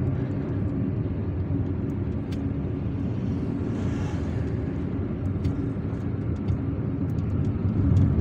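Car engine and road noise heard from inside a moving car's cabin: a steady low rumble.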